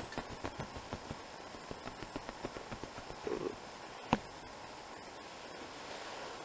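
Light, irregular clicks and rustles of close handling, with one sharper click about four seconds in, then a faint steady hiss.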